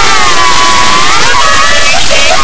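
Very loud, heavily distorted meme-remix audio: a held pitched tone that dips and rises gently, buried in harsh noise.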